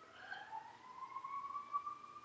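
Faint siren wailing: its pitch dips slightly, then rises slowly and steadily.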